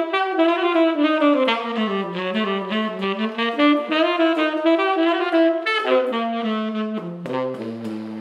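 Tenor saxophone playing a flowing, connected phrase that dips and rises through its middle register, then steps down to low notes near the end.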